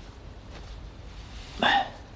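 One short vocal sound, a brief exclamation from a person, about one and a half seconds in, over quiet room tone.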